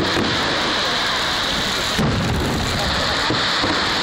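Fireworks display: exploding shells booming, with a sharp bang about two seconds in, over a continuous loud hiss.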